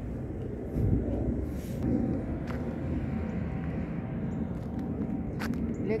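Steady low rumble of wind on the microphone and tyre noise from an electric bike riding along a paved path.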